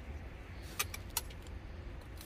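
A few small sharp clicks, two of them close together about a second in, over a low steady hum: light handling noise while a potted succulent is being worked on.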